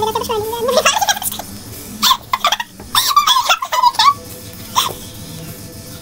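Squeaky, pitch-raised voices laughing and warbling in short bursts: a laugh runs on at the start, with more bursts about two to four seconds in.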